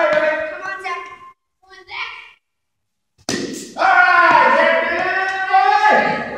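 Children's voices: short calls in the first couple of seconds, then a sharp knock a little over three seconds in and a long, drawn-out vocal sound that bends in pitch to the end.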